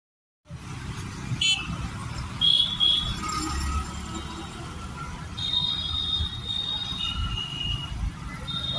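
Street traffic ambience: a steady low rumble of passing vehicles with short, high-pitched horn toots, and a high steady tone held for about two seconds in the second half.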